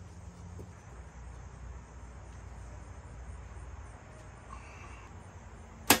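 Quiet outdoor background with a low steady hum and faint insects. A single loud, sharp snap comes just before the end.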